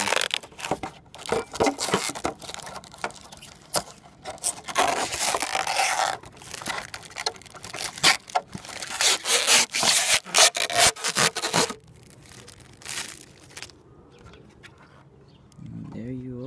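Thin protective film being peeled off a freshly painted clear polycarbonate RC body shell, crinkling and crackling in irregular bursts. The crackling dies down to faint rustling about twelve seconds in.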